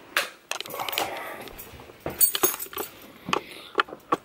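Irregular clicks, knocks and rustling from things being handled on the move, with a metallic jingle like keys about two seconds in.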